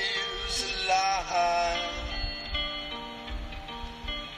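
A recorded song playing: a singer holds long notes that slide in pitch over soft, sustained instrumental backing.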